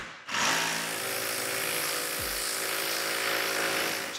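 Ryobi cordless jigsaw cutting through thin plywood. It stops for a moment just after the start, then runs again steadily as the blade saws along the traced line.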